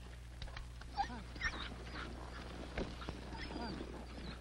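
Sled dogs giving a few short, yelping, whining calls over a steady low hum.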